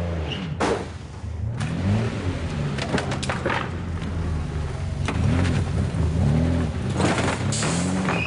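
Film sound of a Lamborghini Countach driven erratically: its engine revved up and down over and over, with several sharp knocks and scrapes.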